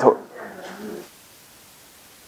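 A man's voice trailing off at the end of a word, followed by a faint voiced murmur, then a pause with only faint room hiss.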